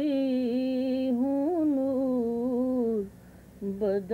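A woman's unaccompanied voice singing Urdu verse in the drawn-out tarannum style of a mushaira, long held notes gliding and wavering in pitch. She breaks off briefly about three seconds in, then takes up the line again.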